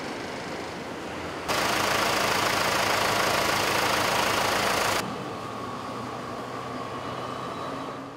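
A vehicle engine running steadily with a low hum. A much louder rushing noise cuts in abruptly about a second and a half in and cuts out just as suddenly about five seconds in.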